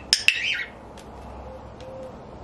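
Cockatiel giving one loud, harsh squawk about half a second long, opening with two sharp attacks close together, the kind of call an annoyed cockatiel makes.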